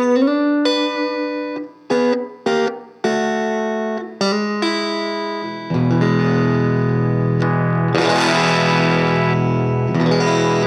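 Fender Nocaster electric guitar played through a small tweed Fender '57 Custom Champ tube amp: chords struck and left to ring, one bent upward near the start, several stopped short. A little over halfway through, a fuller instrumental band track with bass and cymbals takes over and runs on.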